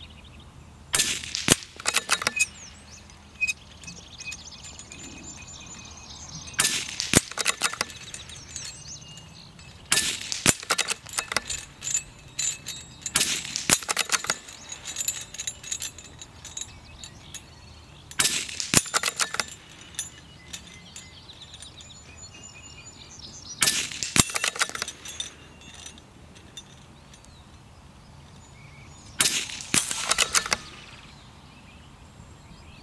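A scoped CZ-455 bolt-action rifle in .22 LR firing shot after shot, several seconds apart, with a short run of metallic clicks from the bolt being worked around each shot.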